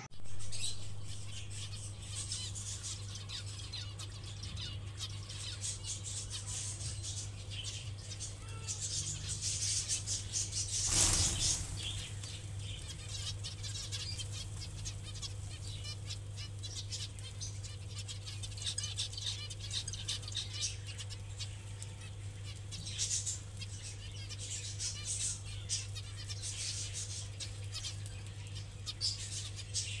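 A flock of small aviary finches chirping and fluttering, many short high calls overlapping without pause, with a brief louder rush about eleven seconds in. A steady low hum runs underneath.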